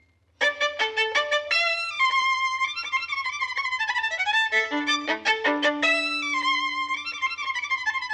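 A violin playing wild gypsy-style music in quick runs of notes, with a few longer held notes near the middle; it starts after a brief pause about half a second in.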